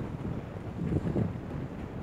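Wind buffeting the microphone as a low rumble, with louder gusts about a second in.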